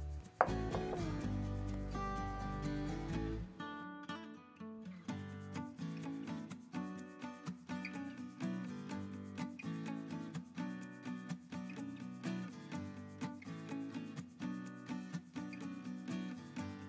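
A large kitchen knife slicing down through a soft layered sandwich cake of bread and tuna filling, knocking against the wooden cutting board, over background music.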